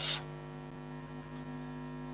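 Steady low mains hum with a buzzy row of overtones, unchanging throughout; a spoken word trails off right at the start.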